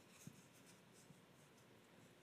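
Near silence: room tone with a few faint small ticks.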